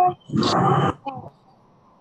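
A person's voice: one short, loud vocal outburst just under a second long, followed by a brief softer sound, then quiet.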